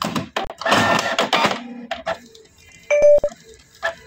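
Canon Pixma G3420 inkjet printer starting a print job, its mechanism whirring and clicking for about a second and a half. About three seconds in there is a short electronic beep.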